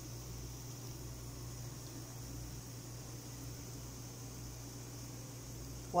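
Aluminium food steamer running on the stove: a steady hiss with a constant low hum underneath.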